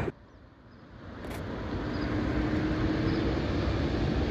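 Steady road-traffic rumble. It fades in over the first two seconds, and a faint steady hum joins it about two seconds in.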